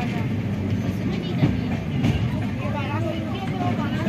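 Steady rumble of a moving passenger train, heard from inside a coach, with people's voices talking over it and one brief knock about a second and a half in.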